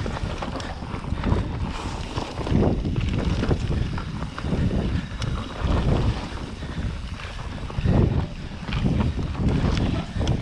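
Downhill mountain bike at speed on a dirt forest trail: tyres rumbling over the ground, with wind buffeting the microphone in repeated gusts. Frequent short clicks and rattles from the bike over the rough surface.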